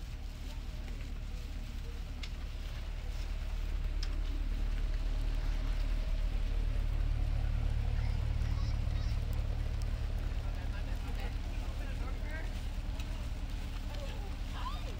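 A car engine idling: a low steady rumble that grows louder about four seconds in.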